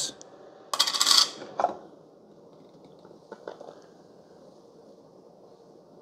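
A short metallic clatter about a second in, then a lighter clink, as the Keurig K-Café's stainless steel milk frother jug is taken off its base and opened once frothing has finished. After that there is only a faint tick and room hiss while the frothed milk is poured.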